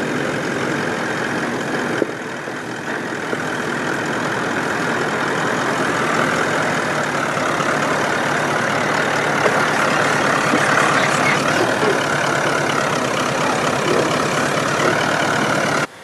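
Toyota LandCruiser VDJ79's 4.5-litre twin-turbo diesel V8 running steadily at low revs as the truck crawls slowly over deep ruts, growing a little louder as it comes closer.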